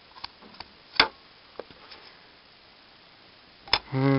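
Light taps and clicks of a ruler and marker being handled on cardboard: a few small ticks, a sharp click about a second in, a softer one shortly after and another sharp click near the end.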